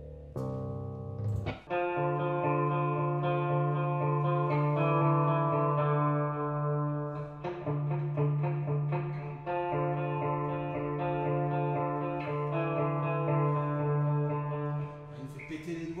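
Electric guitar, a PRS, playing a slow repeating arpeggio of sustained notes over a held low note, the upper notes changing about every second.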